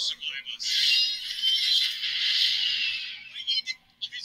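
Movie trailer audio playing through a laptop speaker, thin-sounding: a brief bit of dialogue, then a loud, sustained rushing swell that lasts about two and a half seconds and fades out, with short speech-like sounds near the end.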